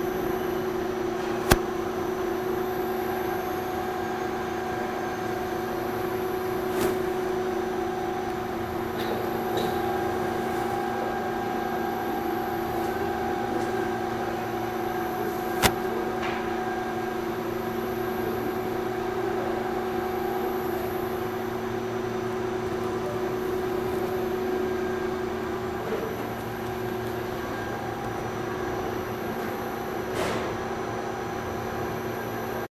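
Electric motor driving a Waukesha SP stainless-steel positive displacement pump, running steadily while it recirculates water, with a constant hum made of several fixed tones. A sharp click about a second and a half in and another about halfway through.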